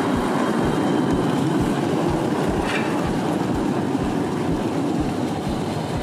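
Chemnitz Bahn tram-train rolling past at close range: a steady rumble of running gear on the rails with a regular low knocking from the wheels. A faint high squeal comes briefly near the middle.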